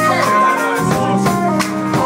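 Live jazz-fusion band playing: electric guitar, electric bass, keyboard and drum kit together, with a stepping melody line over the bass and steady drum hits.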